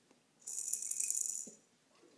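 Rattling shake from a toy on a Fisher-Price jumperoo's tray, lasting about a second and starting about half a second in.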